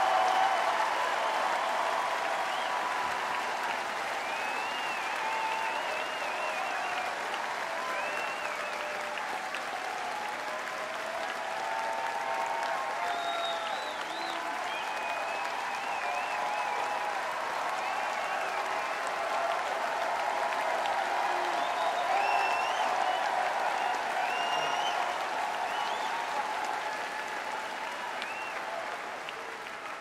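Large crowd applauding and cheering, with scattered shouts and whoops above the clapping. It swells again about two-thirds of the way through and dies down near the end.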